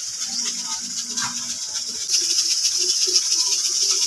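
Insects buzzing in a steady, high-pitched chorus, growing louder about halfway through, with faint murmured voices underneath.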